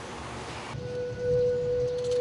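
Faint room noise, then a little under a second in, one long steady note begins: the opening of soft background music.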